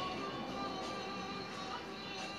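Faint background music playing steadily.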